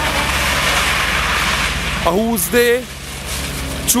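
BMW E36 sliding sideways on wet tarmac: its engine running under a steady hiss of tyres spinning through standing water. Two short shouts ring out, about two seconds in and again near the end.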